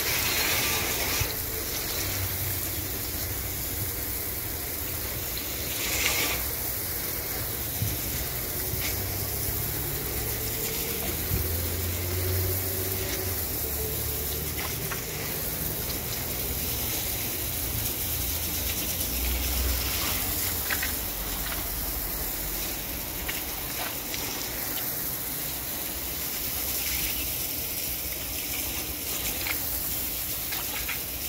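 Steady rush of water spraying from a hose onto outdoor floor tiles, with a few brief knocks along the way.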